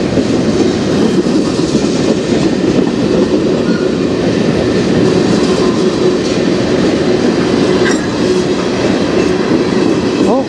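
Freight train's tank cars and hopper cars rolling past close by: a loud, steady rumble of steel wheels on the rails.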